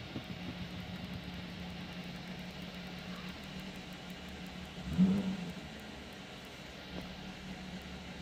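A steady low mechanical hum, with a brief louder sound about five seconds in.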